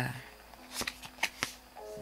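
Paper reading cards being handled as a card is drawn from the deck and laid down, with a few light, sharp card snaps and slides.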